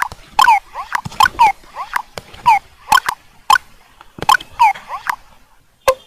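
A series of short squeaky chirps from a small animal, each falling in pitch, about two a second, with sharp clicks among them.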